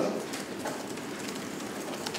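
A pause in speech filled with the low, steady noise of a meeting room, with a few faint clicks.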